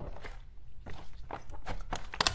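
Thick black glitter slime being pressed, stretched and folded by hand, giving a string of irregular squishy clicks and pops.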